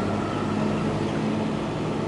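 A road roller's engine running steadily with a low, even hum.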